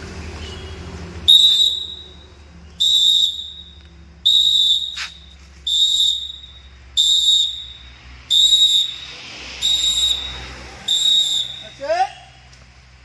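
A whistle blown in eight short, shrill blasts at an even pace, about one every second and a half, marking the count for a group exercise drill.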